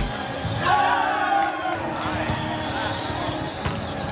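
Volleyball rally in a large hall: players calling out to each other about a second in over crowd noise, with a sharp ball hit near the end.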